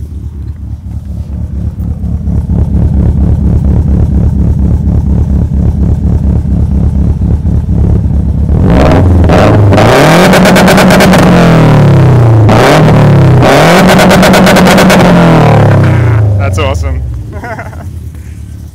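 Exhaust of a bug-eye Subaru Impreza WRX STI with its turbocharged flat-four idling, the idle growing louder over the first few seconds. About halfway through the engine is revved twice, each time climbing, held for a second or two and dropping back to idle.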